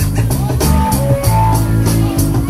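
A rock band playing: electric guitars over bass and a drum kit, with regular drum hits and held guitar notes.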